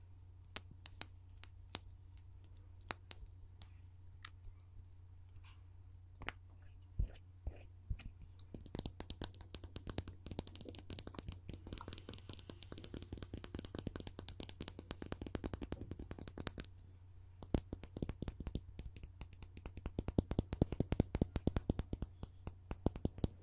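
Fingernails tapping and scratching on a small hand-held object close to the microphone. It begins as scattered single clicks, then turns into dense, fast clicking about a third of the way in, pauses briefly, and picks up again.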